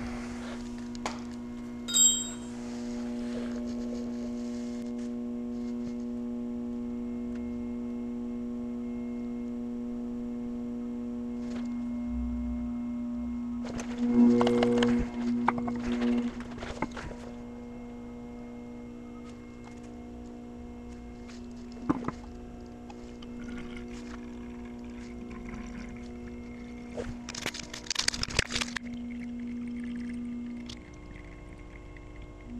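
Volkswagen Passat B7 ABS pump motor running with a steady hum, switched on by a scan tool to flush air out of the ABS module while the brakes are bled. The hum swells for a couple of seconds around the middle. Over it come a metallic clink about two seconds in, shuffling and clatter around the middle, a knock, and rustling near the end.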